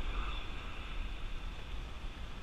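Steady wind rumbling on the microphone over the hiss of surf breaking on the beach.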